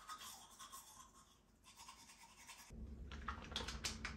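Manual toothbrush scrubbing teeth in quick back-and-forth strokes, faint and raspy. About three seconds in, a low hum starts, and several light clicks follow near the end.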